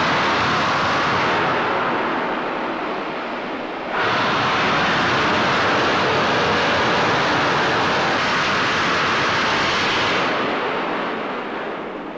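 Loud, steady rushing noise of heavy shipyard work, the din that leaves the ears humming. It dips a little, jumps back up abruptly about four seconds in, and fades away near the end.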